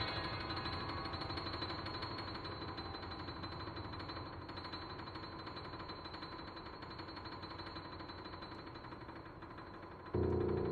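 Concert grand piano notes left ringing after a loud passage, a held cluster of tones slowly dying away over the whole stretch.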